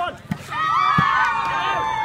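A volleyball struck twice in play, two short sharp hits about a third of a second and a second in. Then a single long drawn-out shout that holds and slowly falls in pitch.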